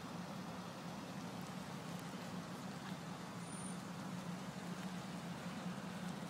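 Low, steady hum of an idling vehicle engine under faint background noise.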